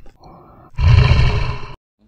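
Lion roaring: a loud, rough roar of about a second that cuts off abruptly near the end, after a softer lead-in.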